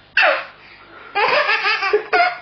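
Baby laughing hard: a short high squeal that falls in pitch just after the start, then, after a brief pause, a longer run of belly laughter in the second half.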